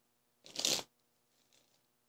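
Tarot cards being shuffled by hand: one short rustle of cards about half a second in, then a fainter one.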